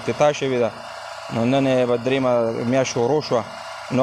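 Speech only: a man talking in Pashto.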